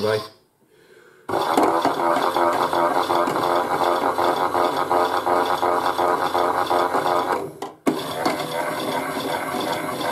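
Chad Valley Auto 2 toy washing machine starting its spin about a second in: a small motor and plastic drum whirring with a rapid steady rattle. It drops out briefly near the end, then carries on a little quieter.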